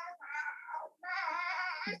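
A fussy young child whining in high-pitched, wavering wails: a short one and then a longer one.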